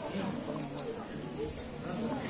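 Faint speech in a pause between louder talk: quiet voices, softer than the speech around it.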